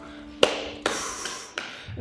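A sharp tap about half a second in, then a longer rustle and another knock near the end, over a faint held note of music.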